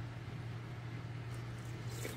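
A steady low hum with faint room noise, and a soft sip of soup from a spoon near the end.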